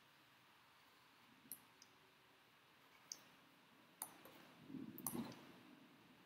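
Near silence broken by about five sharp, scattered clicks from the input device used to draw on a computer whiteboard, with a soft rustle near the end.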